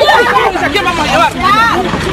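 Several people's raised voices talking and shouting over one another, in a loud, agitated babble.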